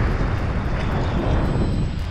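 Wind buffeting the microphone in a steady rumble, over choppy bay water splashing against a rock jetty.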